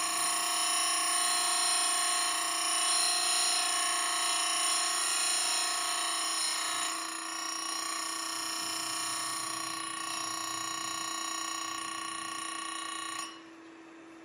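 Simington 451c chain grinder's wheel grinding a square-ground chainsaw tooth under steady pressure: a steady, high, many-toned whine that eases slightly about halfway and stops about a second before the end, leaving the motor's low hum.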